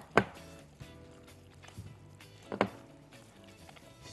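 Faint background music, with two sharp clicks of a utensil striking a glass mixing bowl while vegetables and dough are stirred. The first click comes just after the start and the second about two and a half seconds in, with lighter ticks between.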